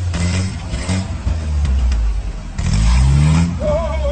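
Engine of a modified Jeep rock crawler running and revving, with a sharp rise in revs about two and a half seconds in that is the loudest part. Near the end a high, wavering cry rises over the engine.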